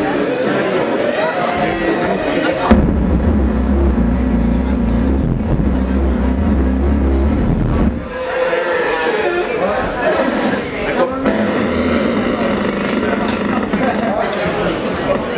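Live experimental electronic music from giant hand-played modular synthesizers, played by touching the wires strung on tall wooden frames. Noisy, warbling mid and high tones are joined about three seconds in by a deep low drone that cuts off abruptly around eight seconds. After that the warbling textures come back.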